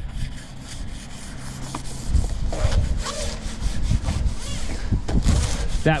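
Abrasive pad rubbed by hand over the painted metal frame of a security door in back-and-forth strokes, scuffing the gloss off ahead of repainting. Wind rumbles on the microphone from about two seconds in.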